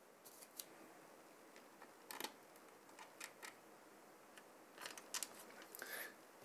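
Faint, scattered clicks and light taps of small mounting hardware being handled, as spacers are fitted onto the CPU cooler backplate bolts; otherwise near silence.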